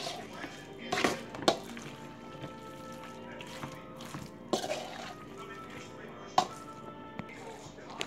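A spoon stirring potato salad in a stainless steel mixing bowl, knocking against the metal with a few sharp clinks, over background music with held notes.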